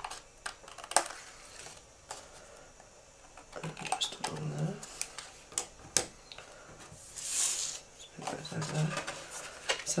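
Scissors snipping through patterned paper: a handful of sharp, separate blade clicks over the first few seconds. Near the end comes a brief hissy rustle of paper being moved.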